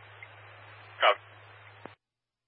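Fire radio scanner left open between messages: a steady hiss over a low hum, with one short, sharp burst about a second in and a click as the transmission cuts off near the end.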